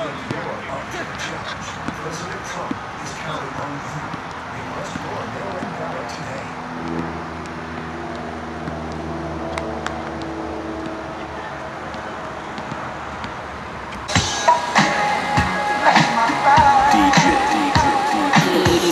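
Outdoor background chatter of distant voices, with a few light thumps of a basketball bouncing on an outdoor court. About fourteen seconds in, loud music cuts in suddenly.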